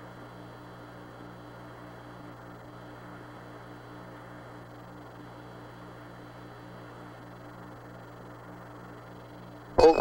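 Steady hiss and low hum of the Apollo 11 radio communications channel between transmissions, with a faint, evenly repeating low tone underneath.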